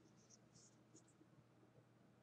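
Near silence: room tone, with a few very faint high ticks in the first second.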